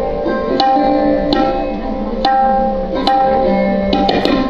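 Sarod playing a melody of sharply plucked notes, roughly one every three-quarters of a second, some of them sliding in pitch. Tabla accompanies it over a steady tanpura drone.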